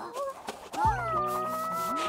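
A cartoon character's high, drawn-out vocal sound that swoops up and then holds, over background music.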